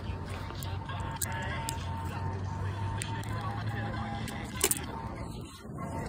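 Bicycle rolling along a concrete sidewalk: steady rolling noise with a low hum, scattered clicks and rattles, and one sharp knock a little before the end.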